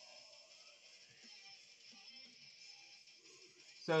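Quiet passage: a steady hiss with faint music in the background.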